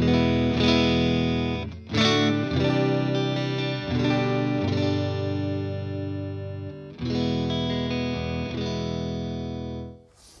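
Electric guitar, a Fender Strat with its neck humbucker coil-split for a single-coil Strat sound, playing strummed chords through a Vox AC15 valve combo. The tone is mostly clean with a little push from the amp. There is a fresh strum about every two to three seconds, each chord left to ring.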